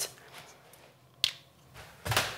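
Quiet room with a single short, sharp click a little past halfway through.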